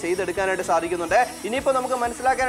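Continuous talking, with a faint steady hiss beneath it from a small battery-powered portable blender running through its 10-second blending cycle.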